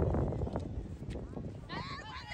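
High-pitched shouted calls from women's soccer players: a few short calls, then a louder burst of shouting near the end, over a low rumble.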